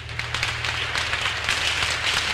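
Audience applause breaking out at the end of a song, with the last acoustic guitar chord still ringing low underneath.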